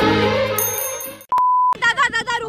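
Intro theme music fading out, then a single short, steady electronic beep about half a second long.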